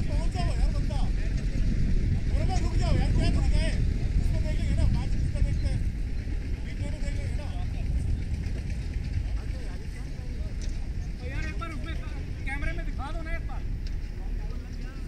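Distant, indistinct voices of cricket players calling and chatting across the field, heard most in the first few seconds and again near the end, over a steady low rumble.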